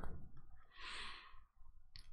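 A man's single faint breath out, like a soft sigh, lasting a little under a second about halfway through.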